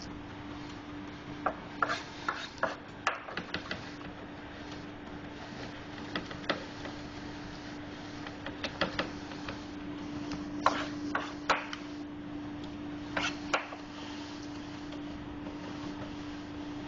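Chef's knife mincing garlic on a plastic cutting board: irregular clusters of quick knife taps against the board with pauses between them, and the blade rubbing as it gathers the minced garlic back together. A steady low hum runs underneath.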